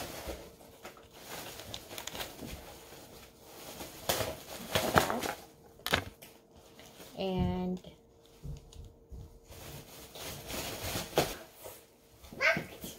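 Handling noise as a small velvet drawstring pouch is opened and a lavalier microphone and its thin cable are drawn out: soft rustles and a few short clicks and taps.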